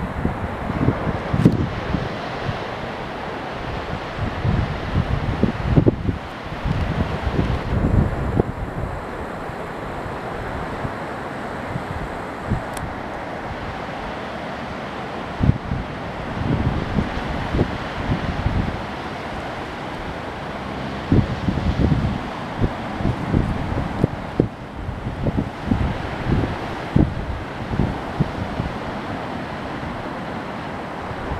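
Surf breaking and washing on a sandy ocean beach, a steady wash of waves, with gusts of wind blowing on the microphone that come and go, heaviest in the first few seconds and again through the last third, with a calmer stretch in the middle.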